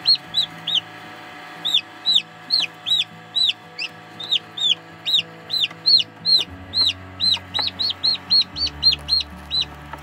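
Newly hatched chicks peeping: a rapid run of short, high cheeps, about two or three a second, with a brief pause near the start.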